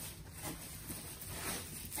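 Soft, irregular rustling and crinkling of honeycomb kraft-paper packing wrap as it is lifted and pulled about in a cardboard shipping box.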